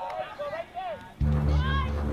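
Raised voices shouting on the sideline of a soccer game. About a second in, a loud, low, steady hum comes in underneath.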